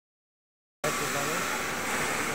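Steady mechanical noise, with people's voices talking over it, cutting in suddenly just under a second in.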